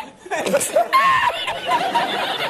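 An older man laughing hard in repeated fits, his laughter running into speech: the 'Risitas' meme laugh.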